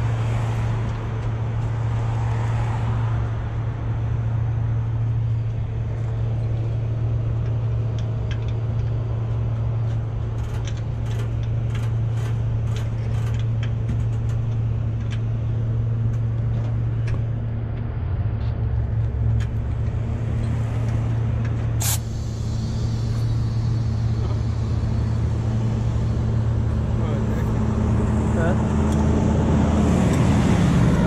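Heavy diesel truck engine idling steadily, with a run of light clicks in the middle and a sharp snap followed by a short hiss about 22 seconds in.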